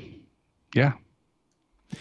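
Speech only: a man says a short 'yeah' about a second in, with dead silence around it.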